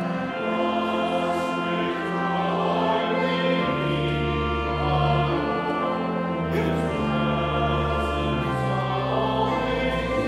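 A hymn sung by the congregation and clergy with organ accompaniment: sustained chords moving note by note under the voices, with held bass notes.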